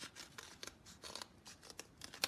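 Scissors cutting through folded thin cardboard: a quick series of short snips, about four or five a second.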